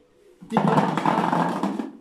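A handful of black olives dropped into an empty thin plastic jar: a dense rattle of olives hitting and tumbling against the plastic. It starts about half a second in and lasts about a second and a half.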